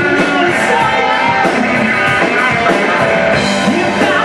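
Live rock band playing, loud and steady: electric guitars over a drum kit.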